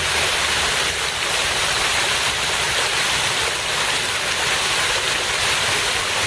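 Water splashing in a public fountain: a steady, even rushing noise that does not let up.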